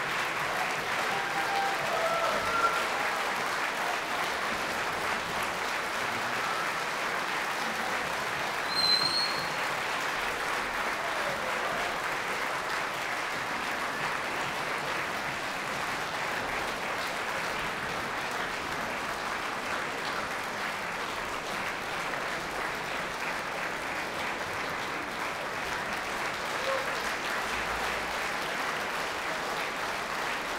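Concert-hall audience applauding steadily, with one brief high whistle from the crowd about nine seconds in.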